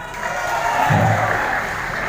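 Supporters in the audience clapping and cheering, with a voice briefly showing about a second in.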